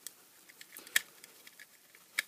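Small plastic case being prised open with a metal tool worked into its seam: scattered faint clicks and scrapes, with one sharper click about halfway through.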